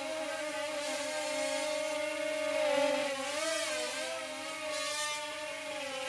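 Brick-built micro quadcopter's motors and propellers whining steadily in flight, the pitch wavering a little with the throttle.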